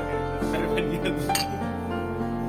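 Background music with long held notes, with a few bright clinks near the middle.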